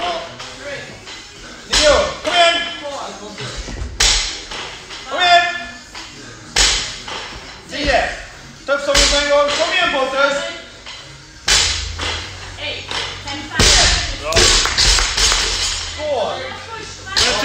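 Voices shouting encouragement to an athlete mid-workout, with several sharp thumps in the first half of a person landing on a rubber gym floor during burpees over a barbell.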